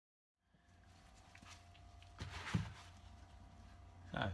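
Quiet workshop room tone with a low hum and a faint steady tone, coming in about half a second in. A brief soft handling noise about two and a half seconds in, from the trimmed plastic motorcycle windscreen being moved in gloved hands.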